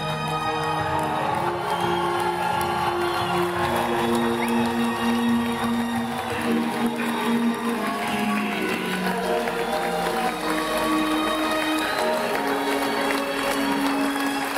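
Live band music from a concert, a slow passage of long held notes that step from one pitch to the next.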